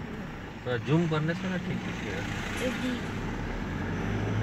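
Car moving slowly, heard from inside the cabin as a steady low running noise, with a person's voice speaking briefly about a second in.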